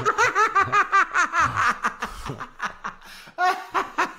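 Men laughing loudly in quick repeated bursts, thinning out about two seconds in, then a fresh burst of laughter near the end.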